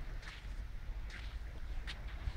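Wind rumbling on the microphone, with small sea waves lapping at a sandy shore in a few short washes.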